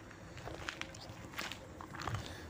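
Soft footsteps of a person walking: a few faint scuffs and clicks at irregular spacing.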